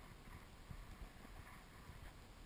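Near silence: a faint low rumble with a few soft knocks.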